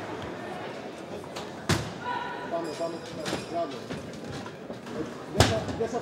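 Two sharp smacks of kickboxing blows landing, one under two seconds in and the louder one near the end, over shouting voices in the hall.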